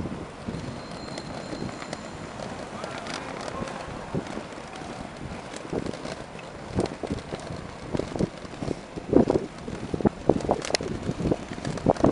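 Skate wheels rolling over pavement: a steady rolling rumble with irregular clacks and knocks that come more often in the second half, with wind on the microphone.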